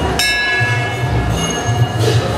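Metal temple bells ringing, one struck just after the start, its many tones ringing on and overlapping with the others, over a low rumble.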